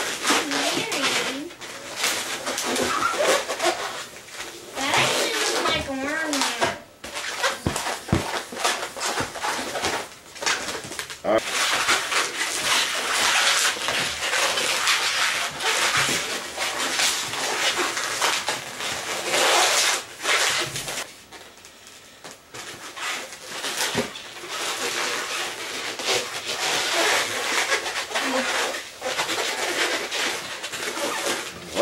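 Inflated latex twisting balloons, a 350 and a 260, squeaking and rubbing against each other and the hands as they are twisted and wrapped together, in irregular spells with a quieter stretch about two-thirds of the way through.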